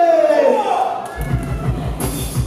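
A man's voice through the PA, drawn out and sliding in pitch, then a backing track with a heavy, pulsing bass beat comes in a little over a second in.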